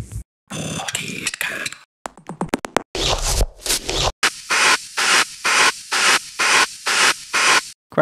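Electronic sample-pack one-shots auditioned one after another from a music production browser: two longer noisy effect sounds, then about a dozen short bright noise hits in quick succession, about three a second, each starting and stopping abruptly.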